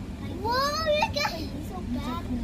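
A young child's high voice rising in pitch through a wordless exclamation for about a second, over the steady low rumble of a commuter train car in motion.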